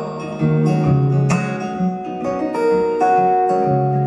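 Amplified acoustic guitar playing an instrumental passage between sung lines, with chords strummed and notes left ringing, one sharp strum about a second and a quarter in.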